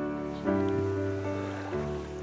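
Background music: held, sustained chords that change about half a second in and again near the end.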